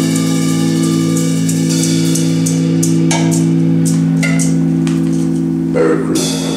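Rock band with electric guitars, bass and drum kit holding a sustained chord, with drum hits and cymbal strikes over it. The bass shifts to a lower note about four seconds in, and a loud hit lands near the end.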